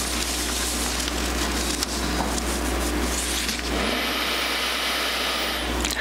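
Steady hiss with a constant low hum, the background noise of the room and recording during a pause in speech; the hiss changes character for the last two seconds or so.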